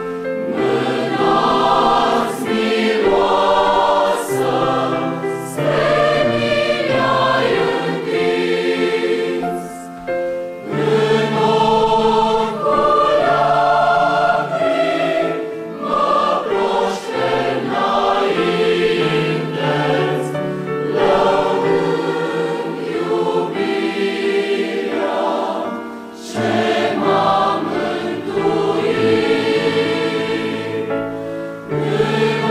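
Mixed choir of women's and men's voices singing a hymn in long, sustained phrases, with short breaks between phrases about ten seconds in and again near the end.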